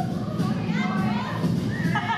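Dance music with a steady drumbeat, with several audience voices whooping and calling over it.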